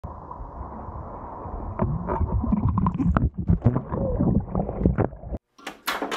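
Muffled water sloshing and splashing around a hydrofoil board and the rider's legs in shallow sea water, over a steady rush of wind noise. About five seconds in it cuts off abruptly, and a short sharp swish follows.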